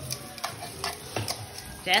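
Rice being poured from a plastic measuring cup into the steel inner pot of an Instant Pot, with a few light clicks and taps spread through the pour.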